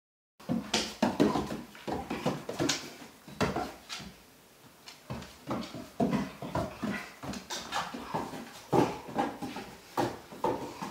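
An American Staffordshire terrier's paws and claws scrabbling and knocking on bare wooden floorboards as she spins chasing her tail. The quick, irregular clatter eases off for about a second near the middle, then starts again.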